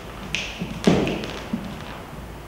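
Footsteps on a hard floor, a thud about every two-thirds of a second, the loudest about a second in, with a short sharp scrape just before it.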